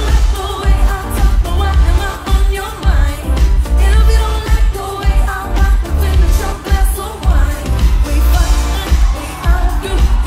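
Live pop song with a female singer's vocals over a band, a heavy steady beat with the bass artificially boosted.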